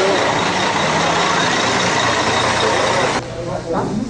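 Loud mix of a bus engine running and many voices close by. It cuts off abruptly a little over three seconds in, and quieter talk follows.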